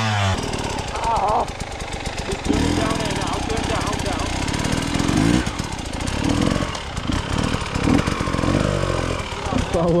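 Enduro dirt bike engine revving unevenly, rising and falling, as the bike is ridden and pushed up a steep muddy slope. Voices are heard over it.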